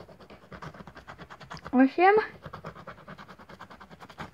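Instant lottery scratch card's coating being scratched off in rapid, repeated short strokes.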